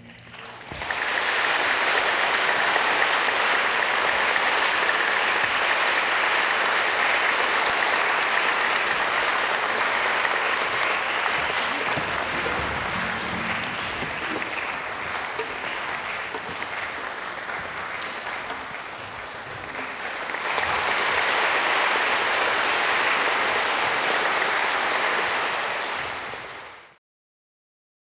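Concert audience applauding at the close of a string orchestra performance. The applause starts within the first second, eases a little, swells again about twenty seconds in, and cuts off shortly before the end.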